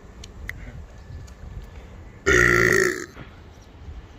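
A man's loud, deep burp, about two and a quarter seconds in, lasting under a second.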